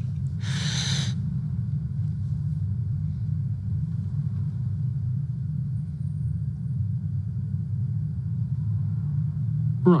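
A woman on the verge of tears takes one long, breathy breath in about half a second in, over a steady low rumble that carries on under the rest of the silence.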